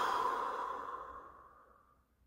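A person's long, breathy sigh that starts suddenly and fades away over about two seconds.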